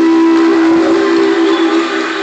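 A live country band holding one long final chord at the end of a song, a steady sustained tone that cuts off just before two seconds in.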